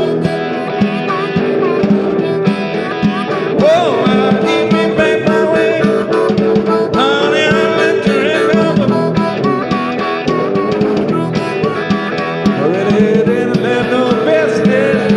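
Small blues band playing an instrumental passage: guitar, blues harmonica with held and bending notes, and a snare drum played with brushes keeping a steady beat.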